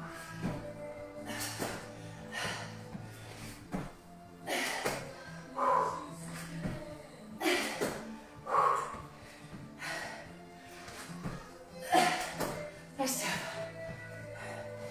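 Background music with a woman's forceful exhalations, one every one to two seconds, as she breathes hard through a set of weighted squats.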